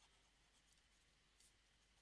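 Near silence, with a few faint scratches and taps of a stylus on a drawing tablet as a word is handwritten.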